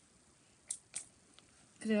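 Two short sharp clicks about a third of a second apart, then a fainter one, before a woman starts to speak near the end.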